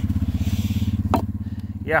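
Small off-road vehicle's engine idling steadily with an even, rapid pulse, and a short sharp click about a second in.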